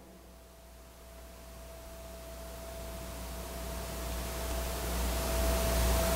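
Steady hiss that grows gradually louder, with a thin steady tone and a low hum underneath.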